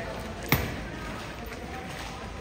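A single sharp, loud stamp of a cavalry trooper's heavy boot on the stone ground about half a second in, over background crowd chatter.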